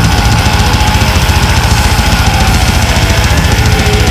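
Brutal death metal playing, with heavily distorted guitars over a dense, rapid drum pulse and one long note held steady on top.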